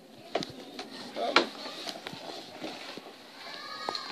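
Handling noise from the recording camera being moved and set back in place: a few light, separate knocks and taps, with faint voices in the background.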